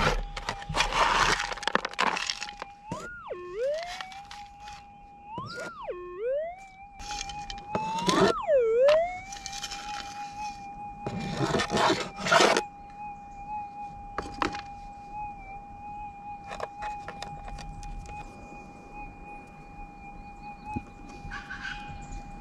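Minelab GPX 6000 metal detector holding a steady threshold tone. About three, five and a half and eight seconds in, the pitch swoops up, drops sharply and recovers: target signals as a plastic gold pan of crushed gold-bearing material is passed over the coil. Gravel rattles and scrapes in the pan between the signals.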